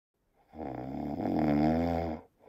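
A man snoring: one long snore that starts about half a second in and grows louder toward the end.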